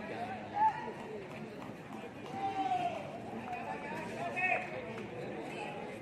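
Distant voices shouting and calling across an open cricket ground, with a sharp cry about half a second in, a long drawn-out call around the middle and another high cry about four and a half seconds in.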